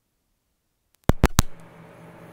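Complete silence while the microphone is unplugged, then about a second in three sharp, loud pops as a lavalier's 3.5 mm jack is pushed into the camera's microphone input. A faint steady hum of the newly connected mic follows.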